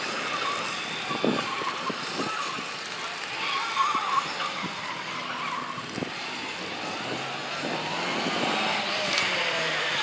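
Mini competition car driven hard through a cone slalom, its engine revving up and down with tyre noise, growing louder over the last few seconds as it comes toward the listener.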